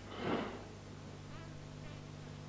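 A short whoosh of movement from a karate practitioner performing a kata, about a quarter second in, over a steady low hum.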